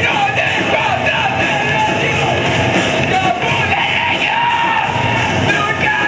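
Live metalcore band playing at full volume, with electric guitars and drums under the vocalist's screamed, yelled vocals.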